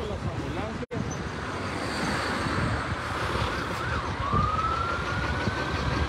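A siren rising slowly in pitch over the last two seconds, over the steady rumble of street traffic.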